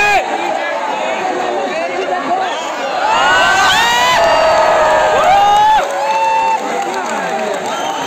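A theatre audience cheering and whooping for about three seconds, starting around three seconds in and cutting off shortly before the end, over voices from the stage.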